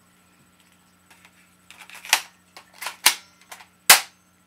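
Spring-powered plastic airsoft machine pistol (M42F) being cocked and fired in semi-automatic: a few faint clicks, then several sharp plastic snaps in the second half, the loudest near the end.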